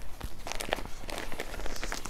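Hands handling folded cloth: irregular rustling and soft taps as folded saree blouse pieces are set down and arranged on a table.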